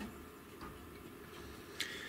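A rabbit eating from a small dish: faint, scattered clicks of its mouth and teeth against the dish, with one sharper click near the end.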